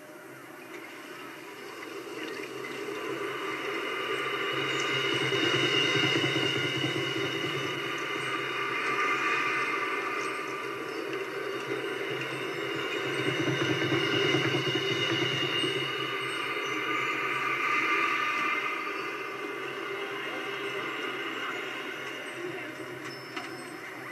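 Marching band playing long held chords that swell and fade several times, heard as a copy of an old VHS tape.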